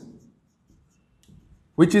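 A felt-tip marker writing on a whiteboard, faint strokes in a quiet pause, before a man's voice starts again near the end.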